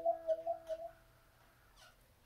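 A sustained guitar chord ringing out, its top note wavering in pulses, fading away about a second in.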